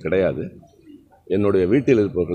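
A man speaking into a cluster of microphones, halting and repetitive, with a pause of about a second in the middle.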